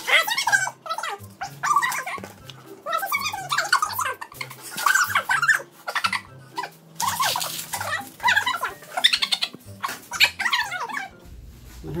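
Dogs vocalizing in repeated short bouts of whining, woo-ing 'talk', over background music with a low bass line.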